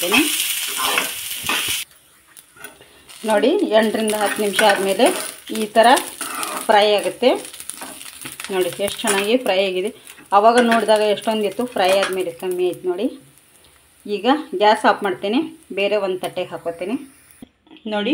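Diced snake gourd sizzling in hot oil in a frying pan while a metal spatula stirs it. The sizzle cuts off suddenly about two seconds in. After that a woman talks for most of the rest.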